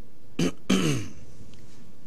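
A man clearing his throat: a short catch about half a second in, then a longer rasp with a falling pitch just before a second in.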